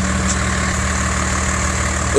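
Large truck's engine idling steadily, a low even hum with no change in speed.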